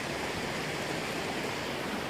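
A steady rushing noise with no distinct events, the even outdoor hiss of wind or running water.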